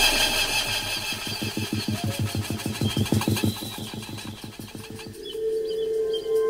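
Breakdown in an electronic drum and bass track: a rapid, engine-like pulsing low synth sound that gradually fades, then a sustained synth chord entering about five seconds in.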